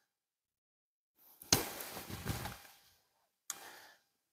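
Silence, then a single sharp knock about a second and a half in, followed by about a second of soft rustling and a faint click near the end.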